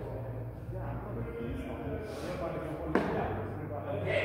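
Voices talking in an echoing indoor hall, with one sharp crack of a padel ball being hit about three seconds in.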